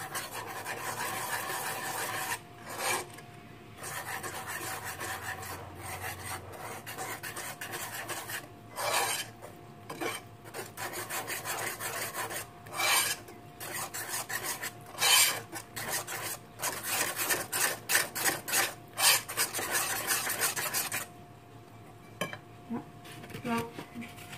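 Wire balloon whisk mixing flour into wet banana batter in a large glazed ceramic bowl, the wires scraping and rubbing against the bowl in repeated strokes. The strokes come faster in the second half and die away a few seconds before the end.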